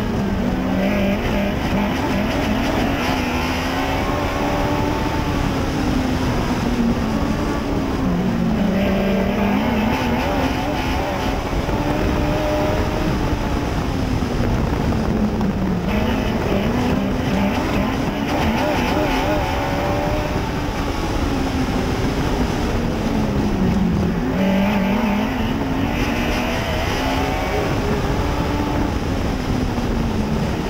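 Mod Lite dirt-track race car's engine heard from inside the cockpit, at racing speed. Its pitch climbs down each straight and drops into each turn, about once every seven to eight seconds, over a constant rush of noise.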